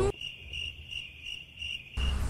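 Cricket-chirp sound effect: a quick, even run of short high chirps, about four a second, dropped in as a gag on the word 'grilo' (cricket).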